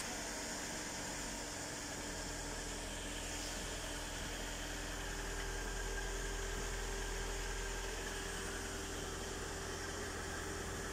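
Vehicle engine idling, a steady low hum with a faint constant tone over it.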